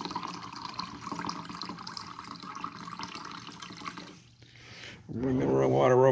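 Water running from a countertop water dispenser's push-button spigot into a glass measuring cup, a steady trickle that stops suddenly about four seconds in.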